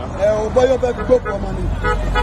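A man talking in the street over traffic, with a motor vehicle's low rumble swelling near the end.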